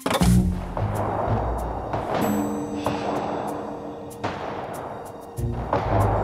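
War-film soundtrack starting up: dramatic music with a series of heavy booms like artillery fire, the first loud hit right at the start.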